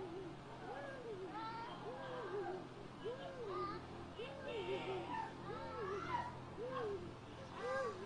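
A person's voice repeating the same rising-and-falling wail, about once a second, with fainter higher cries over it.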